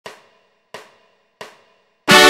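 Drum count-in on a MIDI karaoke backing track: three quiet, evenly spaced percussion clicks about two-thirds of a second apart, each dying away quickly, leading into the song.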